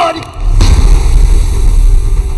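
A deep cinematic bass boom hits about half a second in and carries on as a heavy, steady low rumble, the kind of impact effect a trailer uses to punctuate a scene.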